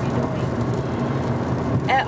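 Steady low drone of a moving car heard from inside the cabin: engine and road noise.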